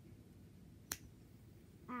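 A single sharp smack about a second in: a hand slap against skin, painful enough to draw an "ow".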